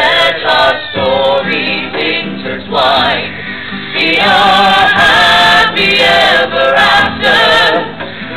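A mixed chorus of men's and women's voices singing a slow, hymn-like song together.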